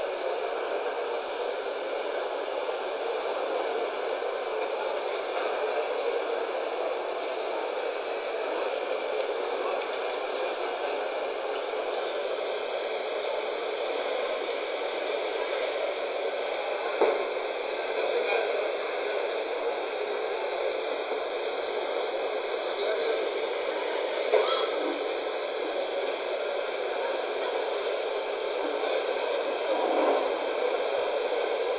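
A steady, muffled wash of noise with no clear voices or tune, like large-hall ambience through a poor recording. There are a couple of brief knocks partway through.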